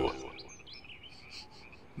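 Faint background of small, high-pitched chirps, several in quick succession, as the tail of a man's voice dies away.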